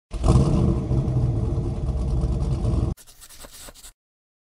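Car engine running with a loud, low rumble that cuts off abruptly about three seconds in, followed by a brief, much fainter scratchy noise.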